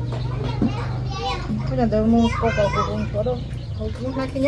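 Speech: people talking, with children's voices rising and falling in pitch, over a low steady hum.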